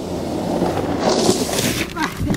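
A snowboard sliding over packed snow, its edge scraping and spraying snow, with a hiss that builds in the second half.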